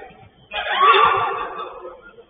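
A loud shout from a player on the pitch, starting about half a second in and fading over about a second, heard through a small camera microphone.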